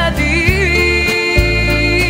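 A woman's voice holding a long sung note with vibrato in a live pop ballad, over band and string accompaniment with sustained bass notes.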